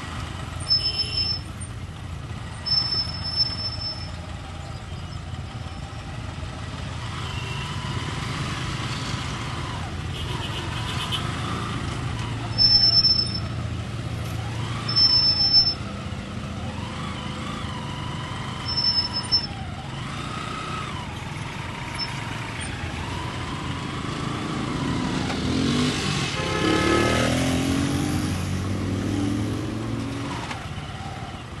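Street traffic: vehicle engines running with a steady low rumble, broken by several short high-pitched beeps. Near the end one vehicle's engine revs up and passes close, its pitch climbing.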